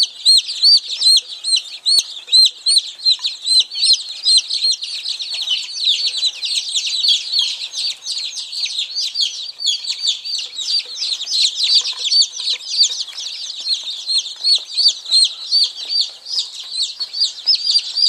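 A brooder full of two-day-old chicks, about eighty of them, peeping constantly: many high-pitched chirps overlapping in a dense, unbroken chorus.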